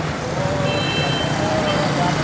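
Steady din of street traffic at a busy city roundabout, with a faint thin wavering tone running through it.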